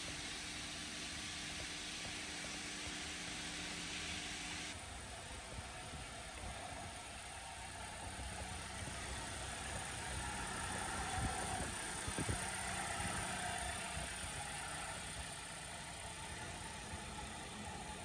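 Faint steady hiss, then from about five seconds in an Audi A3 saloon running quietly and rolling slowly over concrete at low speed, with a few light clicks midway.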